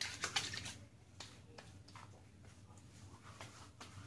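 Thayer's witch hazel being splashed into the hands and patted onto freshly shaved skin: a cluster of soft wet pats and clicks in the first second, then a few faint scattered taps.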